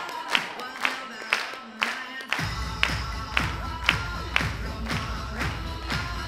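Dance music playing for the routine: a steady beat of about two hits a second, with a deep bass line coming in about two and a half seconds in.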